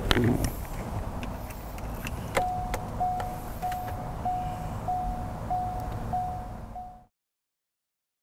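A 2003 Corvette Z06's warning chime sounding with the driver's door open: a short single-pitch tone repeating about every 0.6 s, eight times, over a low steady rumble, after a click about two seconds in. The sound cuts off suddenly near the end.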